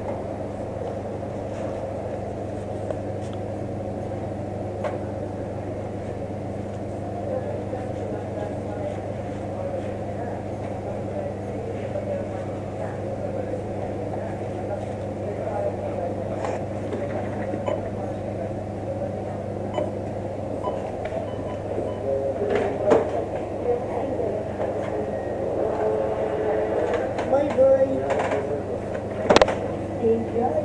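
Indistinct voices murmur over a steady low hum, growing busier and louder in the last several seconds. A few sharp clicks come through, the loudest just before the end.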